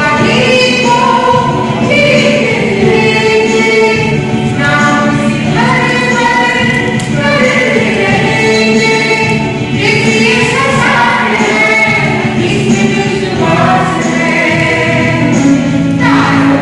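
A small group singing together in unison, holding long notes that glide between pitches, with a steady low note underneath.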